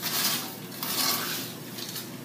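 A wooden spoon stirring and scraping a mixture of seeds and corn around a skillet of warm bacon fat, with a soft sizzle under it.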